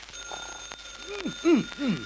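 Telephone ringing: a steady, high, electric ring that starts at once and keeps going.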